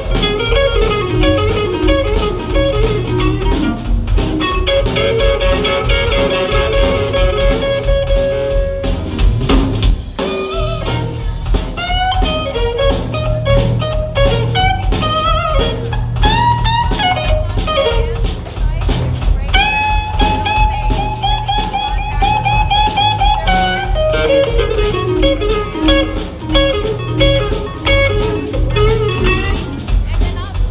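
Live blues band playing: electric guitar lead lines over bass and drums, with long held, bent notes about five seconds in and again around twenty seconds in.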